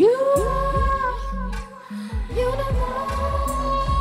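A woman singing long held notes into a microphone over a live electronic pop track. The first note scoops up into pitch, and a second long note comes in a little after halfway. Under the voice, deep bass notes slide downward again and again.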